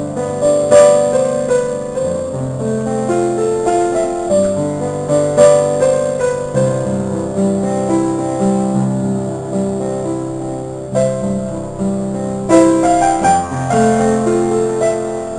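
Piano music: a slow melody of held notes over chords.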